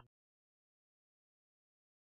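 Silence: a digital gap between radio transmissions.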